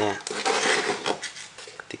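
Rustling and light clicks from hands handling thin test-lead wires and a small plastic rocker switch. The rustling is loudest in the first second, then gives way to scattered faint ticks. The tester's buzzer is silent.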